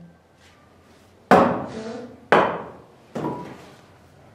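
Three sharp strikes on an iron warping stake, about a second apart, each ringing briefly as it dies away: the stake is being knocked loose so that the wound warp can be taken off.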